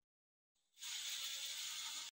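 A steady rasping, ratchet-like mechanical noise from mounting hardware being worked by hand at a wall outlet. It starts under a second in and stops abruptly near the end.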